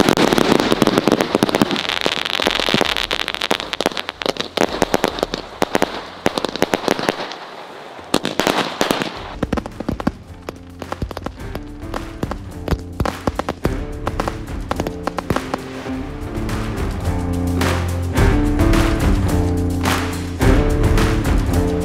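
Many firecrackers and aerial fireworks going off together: a dense run of bangs and crackling with a hiss for the first several seconds. The bangs thin out after about eight seconds as background music with a bass line comes to the fore.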